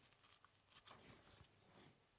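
Near silence: room tone with a few faint, short ticks.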